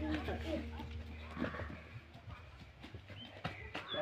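Children playing with a plastic-bag ball on grass: faint voices, and a few dull knocks from kicks and footsteps near the end.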